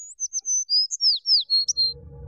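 Bird chirps opening a pop song's intro: a quick run of about ten short, high whistled notes, several sliding downward, with nothing else playing.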